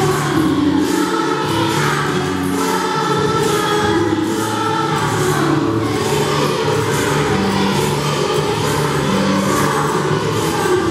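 A group of young schoolchildren singing a Spanish Christmas carol (villancico) together, over a musical accompaniment with a steady beat.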